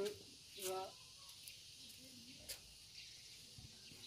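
A man's voice counts "dua" (two), followed by quiet outdoor background with one faint click about two and a half seconds in.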